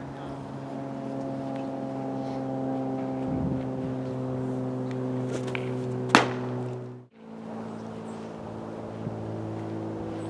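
A pitched baseball pops sharply into the catcher's mitt about six seconds in, over a steady hum of several held low tones. The hum cuts out briefly about a second after the pop, then returns.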